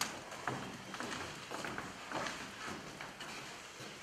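Footsteps of several children walking across a wooden stage floor: a scatter of irregular light knocks of shoes on the boards.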